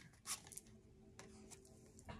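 Near silence: quiet room tone with a few faint clicks.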